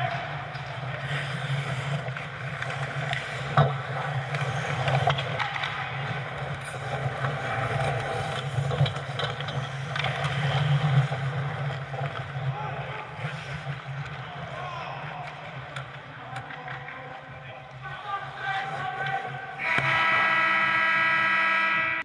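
Ice hockey play on an indoor rink: skates scraping the ice, sticks and puck knocking, players calling out, over a steady low rink hum. A sharp crack of stick or puck comes about three and a half seconds in. Near the end a loud, steady buzzing tone sounds for about two seconds.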